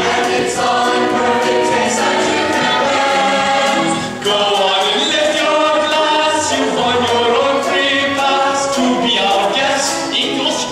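Musical theatre ensemble singing together with musical accompaniment, holding long notes. The sound dips briefly about four seconds in, then comes back.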